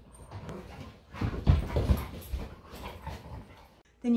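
Two Siberian huskies play-fighting and vocalizing in uneven bursts, loudest about a second and a half in. The sound stops abruptly just before the end.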